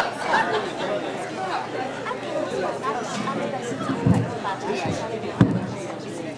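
Audience chatter in a hall, many voices talking at once, with two short low thumps about four and five and a half seconds in.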